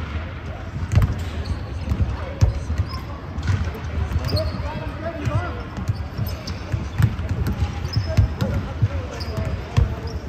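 Basketball bouncing on a hardwood gym floor in irregular thuds, with short high sneaker squeaks and players' voices in the background of a large, echoing hall.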